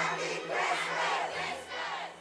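Many children's voices of a choir singing the closing chorus of a pop record together, over a held low note, starting to fade out near the end.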